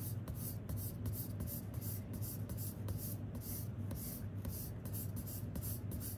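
Soft graphite pencil scratching across sketchbook paper in quick back-and-forth shading strokes, about four a second, building up shadows in drawn hair.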